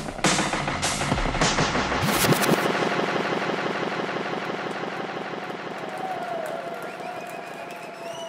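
A drum and bass track plays loudly with heavy bass and drums, then cuts out about two seconds in. It gives way to a crowd clapping and cheering, with a few whoops, slowly fading.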